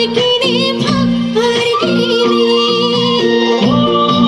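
Live amplified song: a woman sings a wavering, ornamented melody over a band playing a steady, repeating rhythmic accompaniment through PA speakers.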